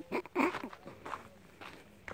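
Footsteps on a loose gravel path, with a brief voice sound near the start.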